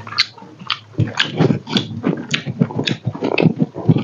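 Close-miked chewing and lip smacking of a person eating pork and rice by hand: an irregular run of quick smacks and clicks.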